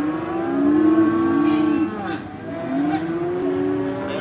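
Cattle mooing: long, drawn-out moos, two overlapping through the first two seconds and a third starting a little past halfway.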